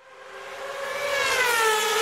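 Electronic transition sound effect: a sustained chord-like tone swells up, bends slightly down in pitch and begins to fade.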